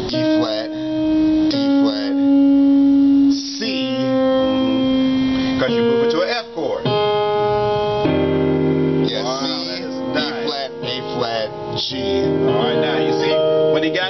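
Piano playing a run of single notes drawn from an E-flat blues scale over a C dominant seventh chord (C, E, B-flat), with held notes and chords. The run comes back down to C and moves on toward an F minor eleventh chord.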